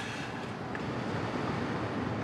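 Steady car-interior background noise: an even, quiet rush with no distinct events.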